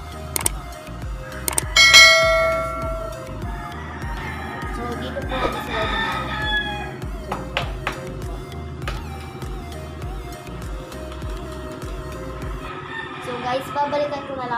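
Background music with a steady beat, and a rooster crowing loudly about two seconds in, with a second crow around six seconds.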